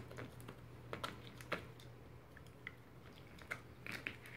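A Shiba Inu gnawing a hard Petstages synthetic antler chew toy: irregular sharp clicks and scrapes of teeth on the toy, the loudest about a second and a half in.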